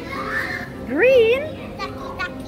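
A young child's voice: one wordless exclamation about a second in that rises in pitch and then wavers. Music plays underneath.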